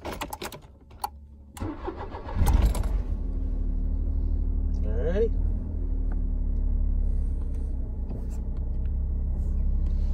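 A car engine cranking and catching about two seconds in, then idling with a steady low rumble. A few sharp clicks come first.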